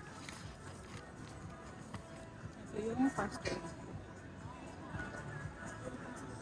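Quiet street background of faint music and voices, with a short voiced sound about halfway through.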